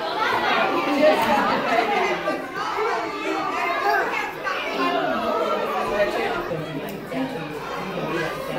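Indistinct overlapping chatter of many voices, adults and small children together, with no one voice standing out.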